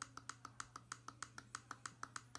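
Rapid, evenly spaced clicking of a computer mouse button, about eight faint clicks a second.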